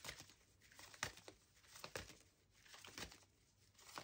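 Faint shuffling of a tarot deck by hand: an irregular run of soft swishes and light card clicks.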